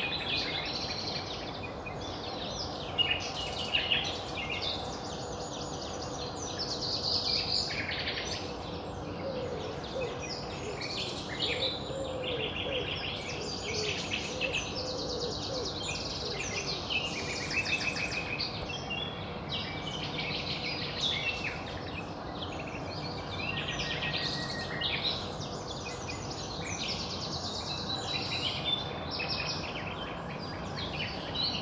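Several songbirds singing at once, with loud, varied phrases and rapid trills of repeated notes; a common nightingale is singing close by.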